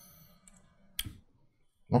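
A single short, sharp click about a second in, in an otherwise near-silent pause.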